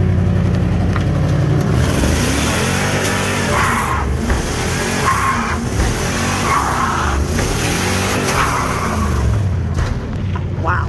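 Dodge Ram 2500 pickup's engine running hard while its rear tires spin and squeal in a burnout. The tire noise comes in about two seconds in, with several sharper squeals after that.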